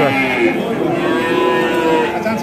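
One long, steady call from a farm animal, held at a level pitch for nearly two seconds.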